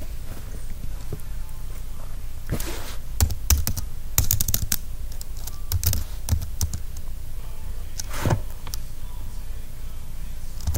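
Keystrokes on a computer keyboard: a few scattered taps in small groups, with pauses between them.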